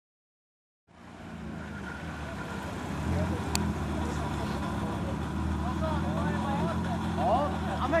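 Silence for about a second, then a car engine idling steadily, a little louder from about three seconds in. There is a single sharp click in the middle, and voices call out near the end.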